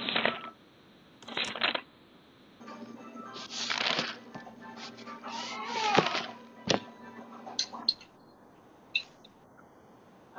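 Rustling and scraping from microphones being handled on a video call, in several short bursts, with a few sharp clicks near the end.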